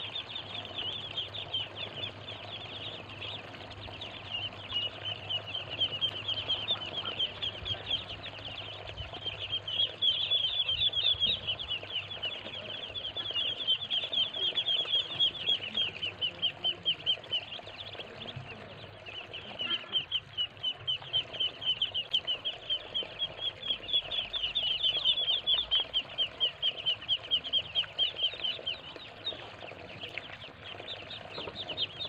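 A brood of muscovy ducklings peeping without a break: a dense chorus of short, high peeps, several a second, that overlap and grow louder in spells.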